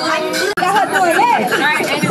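Indistinct voices talking over background music, with the sound cutting out for an instant about half a second in.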